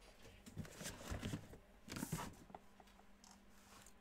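Faint rustling and handling noises with a few soft, small clicks, as from a hand working a computer mouse at a desk, with a brief louder rustle about two seconds in.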